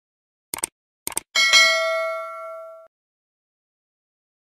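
Subscribe-button sound effect: two quick double clicks, then a bright bell ding that rings with several pitches for about a second and a half, fading, before cutting off suddenly.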